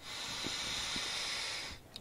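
One long breath of air forced through a handheld Delta V respiratory muscle trainer set to resistance five: a steady hiss that lasts nearly two seconds and then stops.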